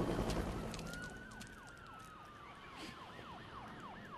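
Sirens: one slow wail falling in pitch and a fast yelping siren sweeping downward about three times a second. A louder dense noise fades away over the first second and a half.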